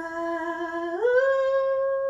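A singer's unaccompanied wordless hummed note, held steady, then gliding up to a higher note about a second in and held there.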